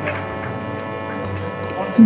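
Steady electrical mains hum with faint room noise.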